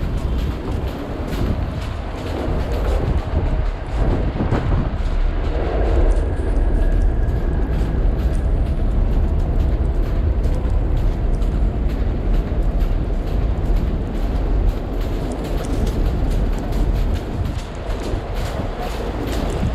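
Steady low rumble of city street traffic mixed with wind buffeting the microphone. A faint high whine is heard for a couple of seconds about six seconds in.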